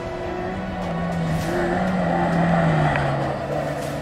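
Suzuki Jimny rally car's engine driving hard past the camera on a sandy track. Its note climbs a little, then falls away over the second half of the clip.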